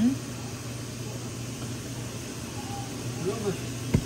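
Steady low hum and hiss around a steaming stainless steel steamer pot, with a brief murmured voice and a sharp click against the pot near the end as the sausage in it is turned.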